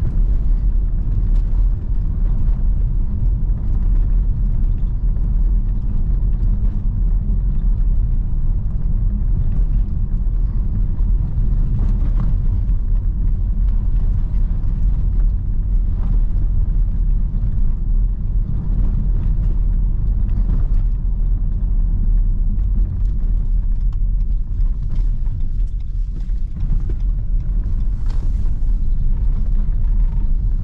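Road noise inside the cabin of a Mitsubishi ASX II driving slowly over cobblestones and broken pavement: a steady deep rumble from the tyres and suspension, with a few light knocks from bumps.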